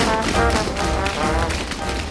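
Tap shoes striking a stage floor in quick rhythmic patterns, over upbeat music.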